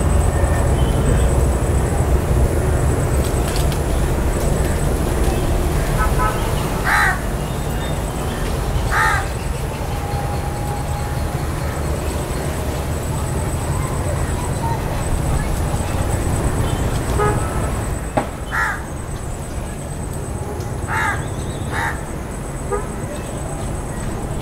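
House crow cawing: five short, harsh caws, a pair about seven and nine seconds in and three more near the end, over a steady low background rumble.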